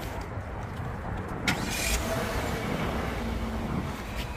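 A car door's latch clicks open about a second and a half in, followed by a short rustle as someone gets in, over a steady low rumble.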